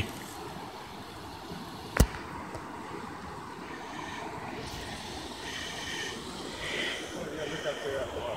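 Shallow, fast-moving creek running over rocks: a steady rush of water, with one sharp click about two seconds in.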